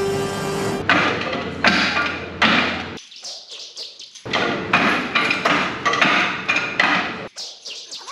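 Background music cuts off about a second in. A kung fu film fight scene follows: a run of sharp strikes and swishes with Bruce Lee's shrill cries, pausing briefly near the middle.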